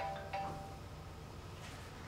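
Mobile phone ringtone: a melodic phrase of chiming notes ends in the first half-second, followed by a pause before the tune repeats.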